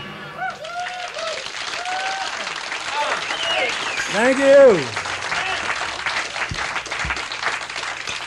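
A small live audience applauding and cheering as the band's music stops, with scattered whoops that rise and fall in pitch. The loudest whoop comes about four and a half seconds in.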